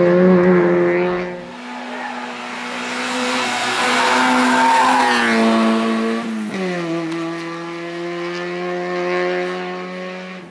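Peugeot 106 hill-climb car's four-cylinder engine running at high revs, its pitch holding steady between steps down, once about a second and a half in and again in a falling drop around six seconds in.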